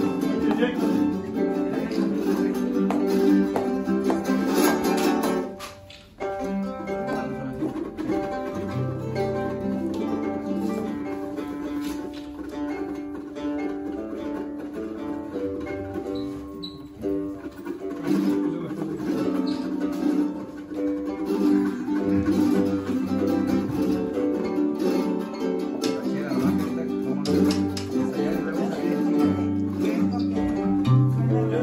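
A small ensemble of strummed small guitars together with a larger plucked guitar, playing a lively rhythmic piece, with a brief break about six seconds in before the playing picks up again.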